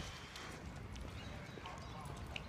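Faint footsteps on asphalt pavement: a few light ticks over low steady background noise.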